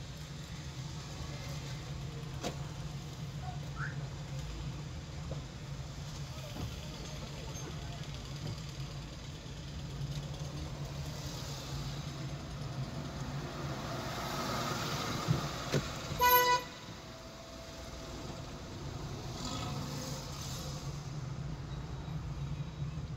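Car driving slowly in town traffic, a steady low engine and road drone. A single short car-horn toot sounds about sixteen seconds in.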